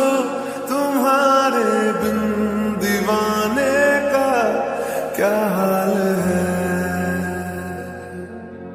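Slowed-down, reverb-heavy lofi remix of a Hindi film love song: a voice holds long notes that bend and glide, over a sustained bass that comes in about two seconds in and drops deeper past the middle. The music eases off in loudness near the end.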